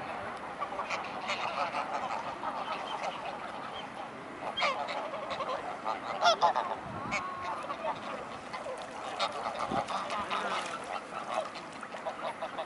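A flock of greylag geese honking and chattering, many overlapping calls at once, with a few louder honks around four and six seconds in.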